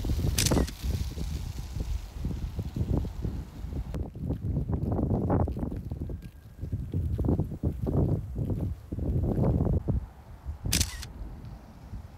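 Camera shutter clicking twice, once about half a second in and again near the end, with a gusty low rumble of wind on the microphone in between.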